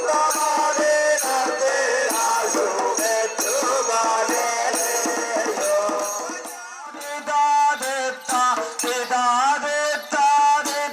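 Padayani ritual music: voices chanting a song in rising and falling lines over fast, steady drum strokes with a rattling jingle. The music thins briefly about seven seconds in, then the singing comes back more strongly.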